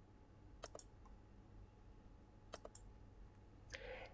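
Two faint computer mouse clicks about two seconds apart, each a quick double tick of press and release, against near-silent room tone.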